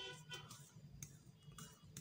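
Near silence: faint room tone with a couple of faint ticks.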